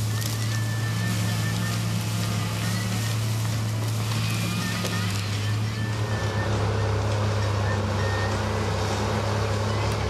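Diesel engine of a grapple skidder running under load as it drives through the woods dragging trees: a steady low drone with constant mechanical noise, shifting slightly about six seconds in.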